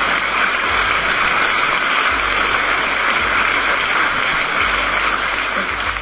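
A steady rushing, hiss-like noise with a low rumble underneath, easing slightly near the end.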